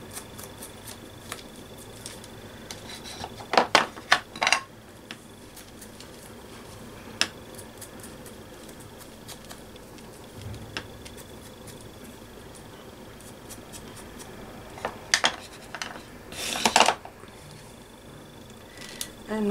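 Craft supplies being handled on a work table: a cluster of sharp plastic clicks and taps about four seconds in and another near the end, as a small ink pad case is opened and shut and a mini ink blending tool is picked up and set down, with faint dabbing in between.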